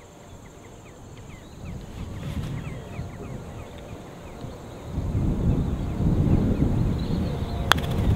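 Wind buffeting the microphone, growing stronger about five seconds in, with small birds chirping throughout. Near the end comes a single sharp click: a three-iron striking a golf ball on a chip-and-run shot.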